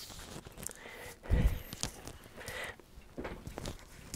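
Soft handling noises as hookup wires are picked up and sorted: scattered light clicks and rustles, with a dull thump about a second and a half in.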